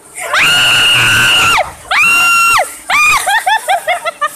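A woman screaming on an amusement ride: two long, high, held screams, then a shorter one that breaks into rapid bursts of laughter near the end.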